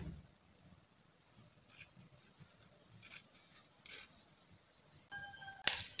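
Scissors snipping faintly and sparsely through silk fabric, cutting along a marked shoulder line, with a brief louder burst of noise near the end.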